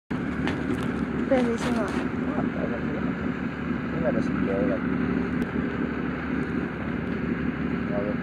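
Steady wind noise on the microphone of a parasailer aloft, with a low steady hum running under it.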